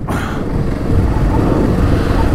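Adventure motorcycle running as it is ridden along a sandy dirt track: a steady low rumble of engine and riding noise.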